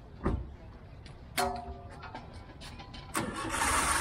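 Vehicle sounds from the street: a short steady horn-like tone about a second and a half in, then a loud rush of engine noise in the last second, with a thump near the start.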